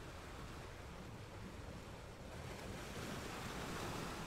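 Wind buffeting the camera microphone: a steady rushing with low rumbling gusts, swelling a little about three seconds in.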